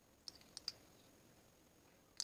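A tiny spoon clicking lightly against a small miniature cup, three quick clicks in the first second, then near silence.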